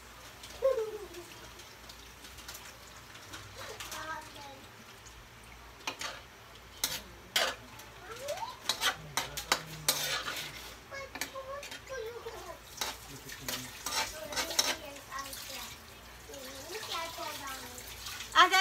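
A metal spoon stirring pork in sauce in a large metal wok, with a run of sharp clinks and scrapes against the pan, mostly from about six to fifteen seconds in.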